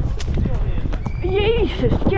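Horse landing over a cross-country log fence and galloping on, its hoofbeats thudding on turf, with a sharp strike just after the start. A constant rumble of wind noise is on the head-mounted microphone.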